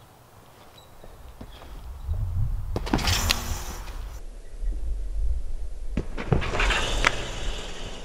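Trampoline mat and springs under a person bouncing and landing: a low rumble of the mat, with two louder bursts of spring and mat noise with sharp impacts, about three seconds in and again around six to seven seconds in.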